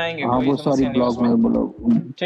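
A man's voice talking, with one drawn-out syllable held at a level pitch in the second half.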